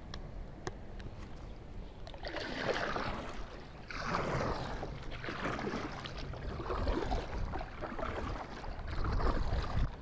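Paddle strokes on a kayak: a swishing splash as the blade dips and pulls through the water, repeating roughly every second and a half from about two seconds in, over a low steady rumble.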